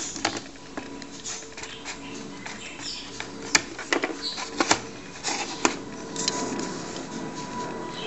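Irregular sharp plastic clicks and knocks of the old Cocomax hi-res interface box being pulled out of the Multi-Pak and handled on the desk, over a faint steady background noise.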